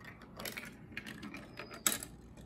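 Hard plastic marble-run track pieces clicking and knocking together as a piece is fitted into place, several short clacks ending in one sharper, louder click.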